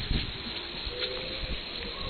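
Otters scuffling through dry fallen leaves close to the microphone: a steady rustle with a couple of soft thumps, and a faint brief whine about halfway through.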